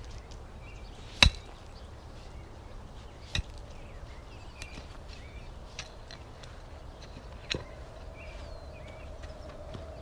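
Pickaxe blows into hard clay soil: four sharp strikes about two seconds apart, the loudest about a second in, as the soil is broken up.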